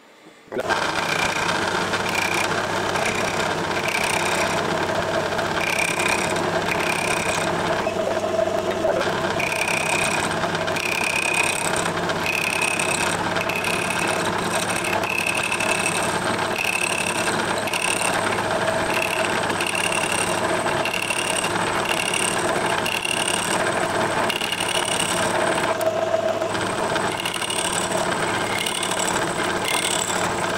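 A metal-cutting lathe starts about half a second in and runs steadily while its tool turns down a metal part held in a collet and supported by a live centre. A higher-pitched note comes and goes roughly once a second over the running noise.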